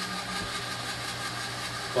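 Steady low mechanical hum under an even hiss from a running fog rig: a hardware-store fog machine blasting into an aquarium of tap water that holds an ultrasonic misting unit.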